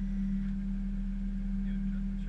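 Steady hum inside an Airbus A320 cockpit on the ground: one unwavering low tone over a deep, even engine rumble.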